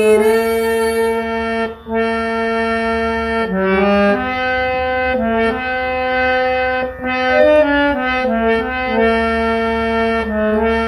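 Harmonium played by hand: a melody of held reed notes, stepping from note to note every half second to a second, with a short break about two seconds in.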